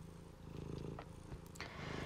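Faint low rumble with a fine, even pulsing, and one small click about a second in.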